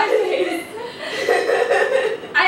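Young women chuckling and laughing, with snatches of voice mixed in.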